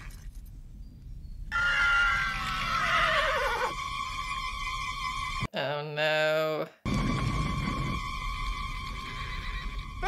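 A horse whinnies for about two seconds, its call falling in pitch, over a film score of held notes. A little past halfway the film sound cuts out briefly and a person's voice is heard for about a second.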